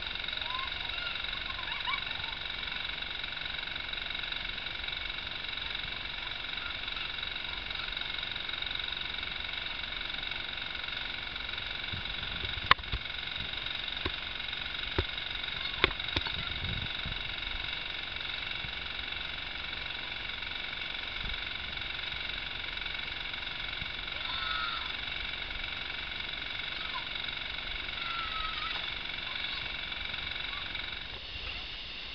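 Steady outdoor insect chorus, several high tones held without a break, with a few sharp clicks about halfway through.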